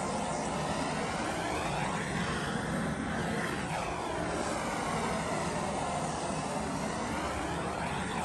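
Handheld propane torch burning with a steady, loud hiss of flame.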